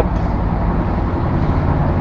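Steady low rumbling background noise with a faint hiss above it, no voice and no distinct events.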